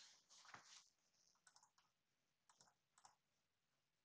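Near silence with a few faint computer mouse clicks, spaced about a second apart.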